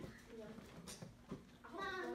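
Faint children's voices in a classroom, with a louder, drawn-out voice near the end.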